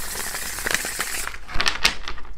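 A deck of tarot cards being shuffled by hand: a steady papery rustle, then a few sharp card clicks in the last half second.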